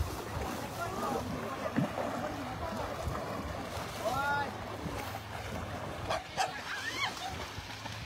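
Water sloshing and lapping around elephants and people wading in a lake, with short voices calling out a few times, notably about halfway through and near the end.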